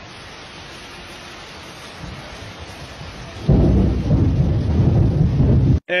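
Steady rainfall, then about three and a half seconds in a loud rumble of thunder that cuts off suddenly near the end.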